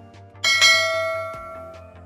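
Notification-bell sound effect: a single bright bell ding about half a second in, ringing out and fading away.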